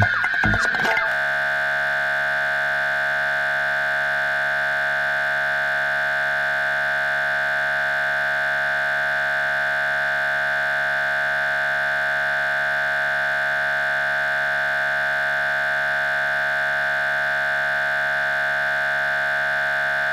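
Electronic dance music cuts off about a second in and gives way to one steady, held electronic tone that does not change in pitch or loudness; just after it ends the dance music comes back.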